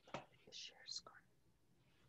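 Faint whispering in the first second or so, then near silence.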